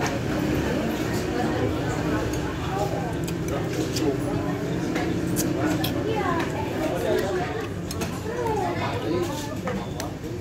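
Indistinct voices talking throughout, with a few light clicks of a metal spoon against a ceramic soup bowl.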